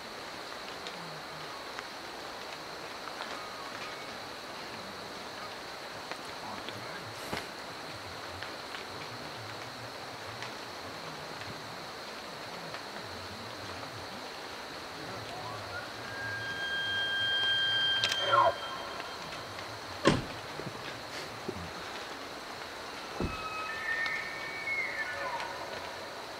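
Bull elk bugling: a call that rises into a high, held whistle and then slides steeply down, followed near the end by a second, shorter whistle. A steady hiss runs underneath, and a sharp click comes a couple of seconds after the first bugle.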